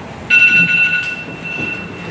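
Loud high-pitched squeal of public-address microphone feedback: two steady tones starting abruptly about a third of a second in, the lower one dropping out near the end.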